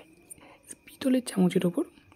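Speech: a voice talks for under a second, starting about a second in, over a faint steady high tone.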